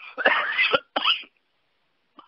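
A man coughing and clearing his throat: a rough burst about half a second long, then a shorter one about a second in.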